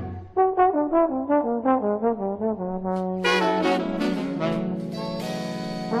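Big-band jazz with a trombone lead: a run of short notes stepping down in pitch, then the brass section comes in on a held closing chord that settles lower and softer.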